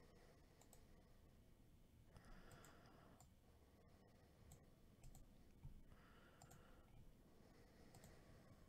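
Near silence: a few faint, scattered computer mouse clicks over low room tone.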